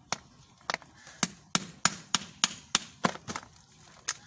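Hammer blows on a knife set into the top of a catfish's skull, cutting open the brain case to reach the pituitary gland: about ten sharp strikes, coming in a steady run of roughly three a second through the middle.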